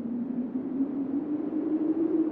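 A sustained low synthesized drone in an ambient sci-fi soundtrack, rising slowly in pitch over a soft hiss.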